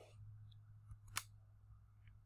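Near silence with a low steady hum, broken by one sharp computer-mouse click a little over a second in.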